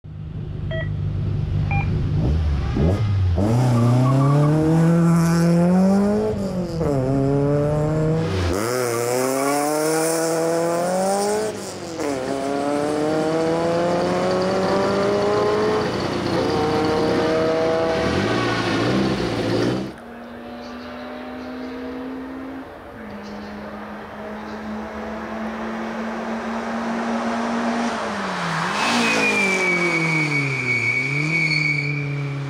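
Racing car engine accelerating hard through several gears, the revs climbing and dropping back at each upshift. It then falls to a quieter steady engine note, and the revs rise again near the end.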